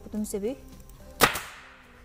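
A single sharp crack from an upholstery staple gun driving a staple, about a second in, followed by a short fading hiss.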